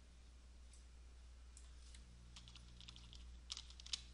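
Faint clicks of a computer mouse and keyboard: a few scattered ones, then a run in the second half with the two loudest just before the end, over a steady low hum.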